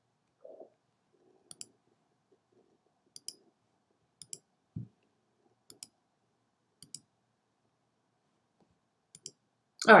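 Computer mouse clicks, each a quick double tick of press and release, about six of them spaced a second or so apart, with a short low thump near the middle.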